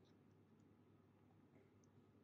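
Near silence: room tone, with a few very faint ticks.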